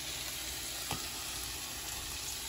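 Saucepan of rice in broth bubbling at a steady boil: an even, continuous hiss, with one light click about a second in.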